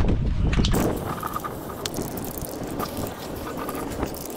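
Aerosol spray can of black primer hissing steadily, starting about a second in. Wind rumbles on the microphone before it.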